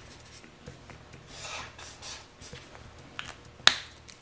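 Marker tip rubbing on paper in short strokes as it colours in a small area, then a single sharp click near the end.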